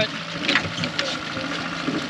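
Yamaha 9.9 outboard motor running steadily with an even hum.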